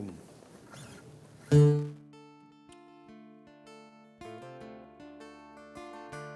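A traditional Cretan string ensemble of lutes (laouta) and an oud starting a slow song introduction: a loud first note about a second and a half in, then a run of plucked notes.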